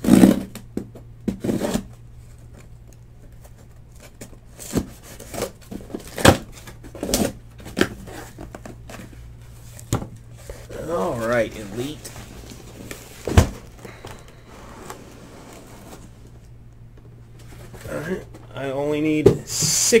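A cardboard case of trading-card hobby boxes being opened by hand: scattered rustles, tears and sharp knocks as the flaps are pulled open and the boxes are lifted out and set down on the table.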